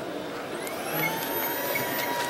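A motor whine that rises in pitch from about half a second in, then holds steady, heard over the general noise of an indoor hall.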